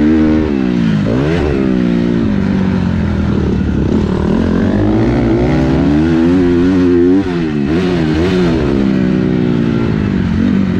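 Motocross dirt bike engine heard close up from the rider's own bike, revving up and down again and again as the throttle opens and closes, with a brief drop in loudness about seven seconds in.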